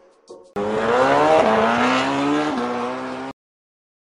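Motorcycle engine accelerating hard, its pitch climbing steadily with two brief dips like gear changes, starting suddenly and cutting off abruptly.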